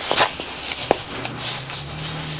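Hook-and-loop flap of a fabric shooting-rest bag being pressed shut by hand: several short, scratchy rustles of fabric and Velcro, with a sharp click about a second in.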